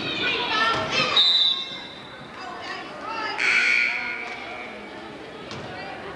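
Shouting and chatter from spectators and players in a school gymnasium, with a referee's whistle blast about three and a half seconds in.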